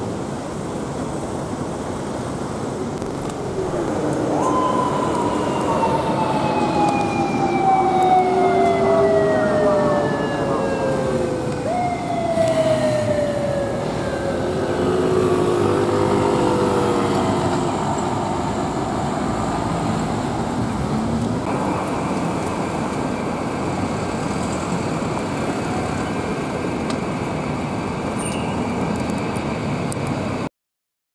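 Japanese police motorcycle siren wailing, two long wails that each jump up sharply and slide slowly down, from a few seconds in until about the middle, over steady city road traffic.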